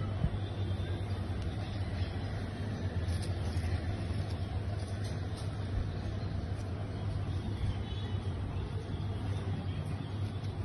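Steady low rumbling hum of background noise, with a few faint ticks.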